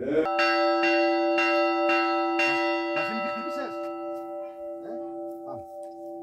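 Chapel bell hung on a small metal frame, struck about six times at roughly two strokes a second, then left ringing and slowly dying away.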